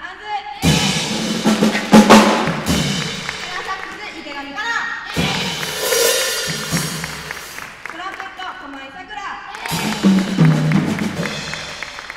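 A jazz big band with drum kit playing three short, loud full-band hits about four and a half seconds apart, each ringing off into the hall.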